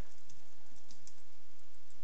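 Typing on a computer keyboard: a run of light, irregular keystrokes.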